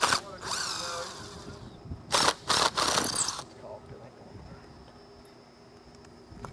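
Cordless drill/driver running in short bursts on the old wooden window buck that is being removed, its motor whine rising and falling in pitch. There is one longer run in the first two seconds, then two shorter, louder bursts around the third second.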